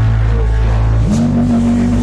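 Loud rock music with a sustained low bass drone and held guitar tones; about a second in, a held note slides up and settles into a long sustained pitch.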